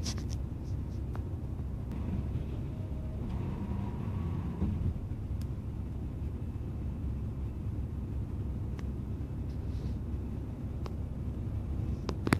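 Steady low rumble of an express coach's engine and tyres at motorway cruising speed, heard inside the passenger cabin, with a few faint clicks and rattles scattered through it.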